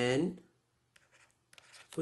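A man's drawn-out spoken word trailing off about half a second in, then a short pause with a few faint stylus taps and scratches as he writes on a tablet, and his voice returns near the end.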